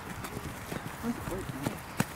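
Footballers' boots thudding on grass turf in quick, uneven footfalls as several players sprint and change direction, with brief indistinct voices.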